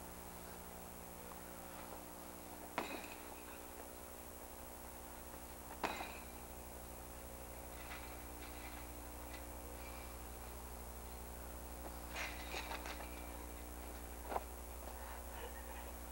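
A few sharp knocks and bangs from people wrestling inside a chain-link cage: one about three seconds in, the loudest about six seconds in, a quick run of them around twelve seconds, and one more near fourteen seconds. A steady low hum runs underneath.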